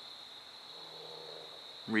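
Crickets trilling steadily at one high pitch, with a faint low hum about the middle.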